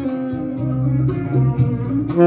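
Instrumental backing track with guitar and bass carrying on during a brief gap between the saxophone's melody phrases; the lead saxophone comes back in just at the end.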